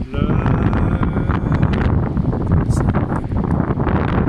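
Strong wind buffeting the microphone, a heavy low rumble with no let-up.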